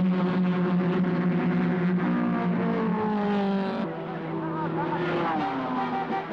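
Racing car engines running at a steady high pitch, which drops away about four seconds in. After that comes orchestral music with wavering brass notes.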